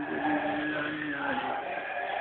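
A man's voice holding one long sung or chanted note that stops about a second and a half in, with other voices faint behind it.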